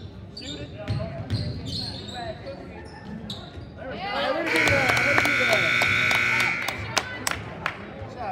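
Gymnasium scoreboard horn sounding one steady blast of about two seconds, starting a little past the middle, over crowd voices and a basketball bouncing on a hardwood court.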